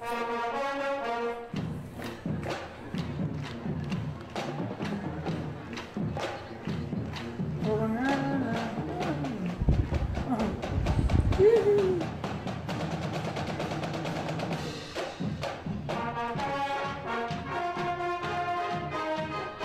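Japanese high-school marching band playing: a brass chord, then a long drum-line passage of rapid, even drum strokes with heavy low bass-drum thumps about ten seconds in, the loudest part, and the brass section coming back in near the end.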